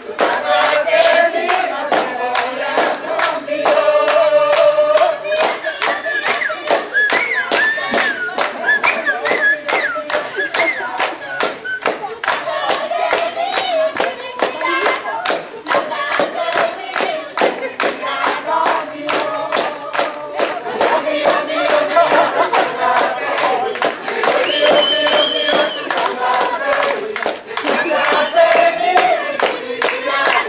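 A group of people singing a song in Swahili together, with steady rhythmic hand clapping.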